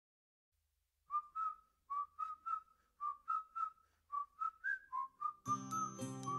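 Whistled melody in short, bouncing notes, the whistling intro of the song's recording. About five and a half seconds in, the full band of the recording comes in.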